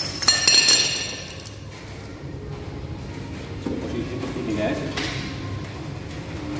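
Metal clinking and ringing from a cable-pulley gym machine's hardware as the rope attachment is picked up off the floor, a sharp clink followed by about a second of rattling, then quieter handling sounds.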